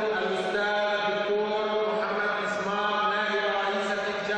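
A man's voice over a microphone and PA, chanting in long drawn-out held notes rather than speaking plainly.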